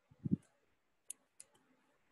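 A short, low, muffled bump, then two small sharp clicks about a third of a second apart.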